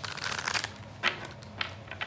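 A deck of oracle cards being shuffled by hand: a burst of papery rustling at first, then short sharp card snaps about a second and a second and a half in.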